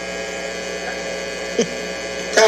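Steady electrical mains hum with a faint buzz, carried in the recording, and one short voice sound about a second and a half in.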